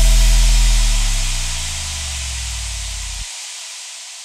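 Final sound of an electronic dance track: a held sub-bass note with a downward sweep running through it, under a white-noise wash. The bass cuts off about three seconds in and the noise keeps fading out.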